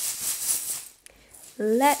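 Small metal charms jingling and rattling together for about a second.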